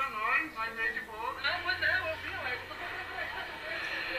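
Speech only: a person talking in Portuguese, heard through the played video.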